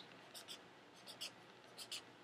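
Faint scratch of a marker tip on sketchbook paper in a few short strokes, drawing small triangles.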